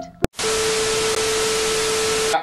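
A sung note cuts off with a click, then a steady hiss of television static with a steady mid-pitched tone running through it, a TV-static sound effect.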